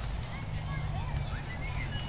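Outdoor ambience between sword blows: a steady low rumble with faint short chirping sounds above it, and no weapon or shield strike landing.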